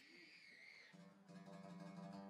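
Very faint: about a second in, a single plucked string note starts and rings on steadily, as an instrument is checked before the next song.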